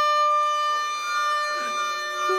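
Contemporary chamber music for voices, violin and flute. A steady held high note with many overtones runs throughout, a breathy wisp of air rises in the middle, and a lower wavering tone enters about a second and a half in.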